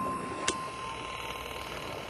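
Fading tail of a studio intro sound effect: a steady high tone over a dying hiss, with one sharp click about half a second in.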